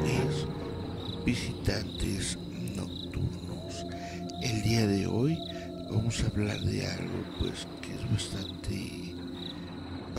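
Crickets chirping steadily in a recorded night-time soundscape, with faint eerie tones and a short wavering sound about five seconds in.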